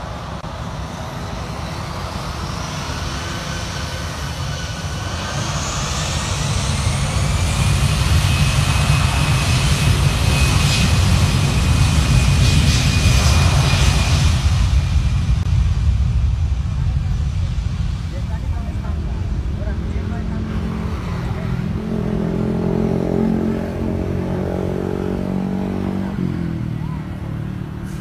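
Batik Air Airbus A320's jet engines at takeoff thrust on the takeoff roll. A rising whine climbs over the first several seconds and then holds steady. A heavy rumble is loudest in the middle as the jet passes, then fades as it moves away.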